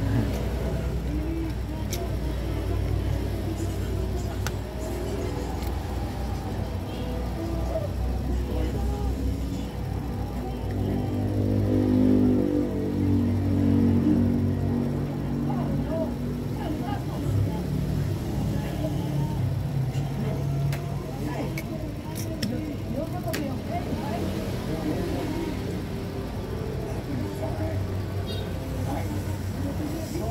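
Steady low, engine-like background rumble mixed with indistinct voices and music, swelling briefly near the middle. A few light clicks come from handling a phone and its parts.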